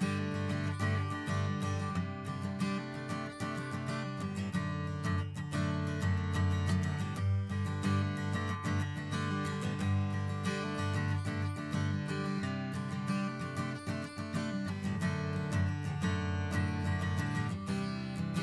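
Instrumental background music with a strummed acoustic guitar, playing steadily.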